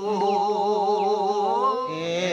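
A man's voice in a slow, wordless chant, holding long notes that waver in pitch. Near the end a lower voice with a quick, even vibrato takes over.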